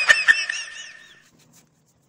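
Rapid, high-pitched snickering laughter trailing off about a second in.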